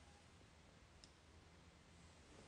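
Near silence: faint room tone, with one brief faint click about a second in.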